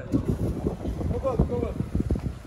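Wind buffeting the microphone in an uneven low rumble, with people talking faintly in the background.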